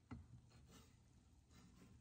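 Near silence, with a faint soft tap just after the start and a couple of fainter ticks, as a hand and cleaver gather chopped chicken on a plastic cutting board.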